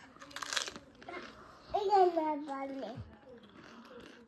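A toddler crunching and chewing a snack, with a short noisy crunch about half a second in. A short spoken phrase follows around two seconds in.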